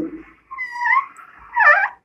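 Marker squeaking on a whiteboard as a circle is drawn: two short squeaks, the first about half a second in, the second near the end.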